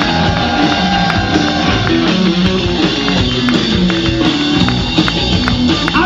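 Live rock band playing an instrumental passage on guitars and drum kit, with no vocals.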